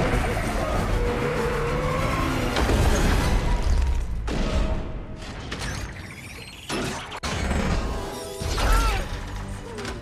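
Film action soundtrack: music mixed with clanking, crashing metal effects, dense and loud for the first few seconds. It then turns quieter, with a short sudden drop-out and a loud rushing swell near the end.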